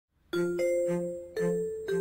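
Intro music jingle: four struck, bell-like notes, each ringing on and fading, starting about a third of a second in over a soft low pulse.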